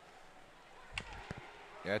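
Quiet ice-rink ambience with two sharp knocks about a second in, a fraction of a second apart: hockey sticks and puck in play.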